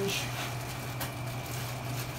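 A clear plastic bag being handled and rustled, with a single short click about a second in, over a steady low hum.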